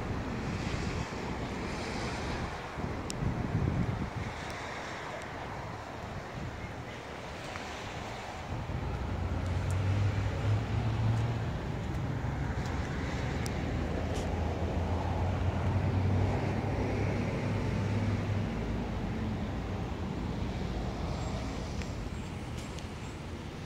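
Outdoor traffic noise with wind on the microphone. About nine seconds in, a low steady engine hum comes up and holds for roughly ten seconds before easing off.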